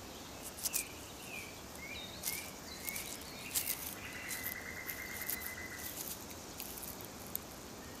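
Faint outdoor nature ambience: a few short chirps in the first half, then a steady insect trill for about two seconds in the middle, with soft scattered ticks and rustles.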